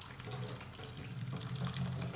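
Kitchen tap running cold water over boiled vermicelli in a plastic colander, the water splashing into a stainless-steel sink, a steady rush. The just-cooked vermicelli is being rinsed with cold water to cool it.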